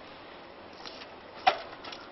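A trials bike knocking on a concrete ledge as the rider balances and hops on it: a faint tap about a second in, then one sharp knock about a second and a half in, followed by a few light ticks.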